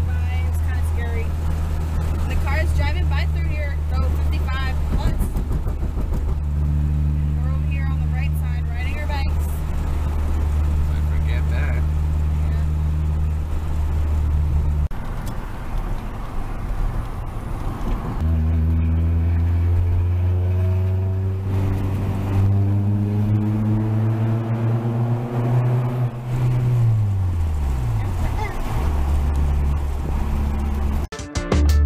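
Car engine and road noise droning steadily inside the cabin while driving. About halfway the drone eases off for a few seconds, then the engine note climbs steadily as the car accelerates and drops away near the end as it slows.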